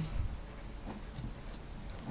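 Faint room hiss with a couple of soft knocks about a second in: a sewing machine motor's belt pulley and small reduction gears being turned and handled by hand.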